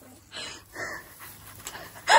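Two quick, heavy breaths, as of a person panting with effort while handling a heavy tub of garlic plants.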